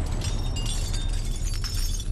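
A plate target shattering, as a drawn-out crash with a steady deep rumble underneath.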